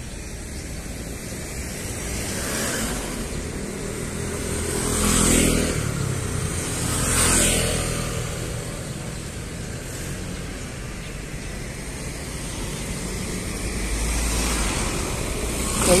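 Street traffic: two motor vehicles pass close by about five and seven seconds in, their engine and tyre noise swelling and fading, over a steady hum of traffic.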